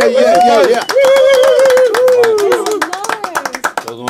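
A few people clapping rapidly in applause, with a voice calling out a long, wavering held cheer that falls in pitch toward the end.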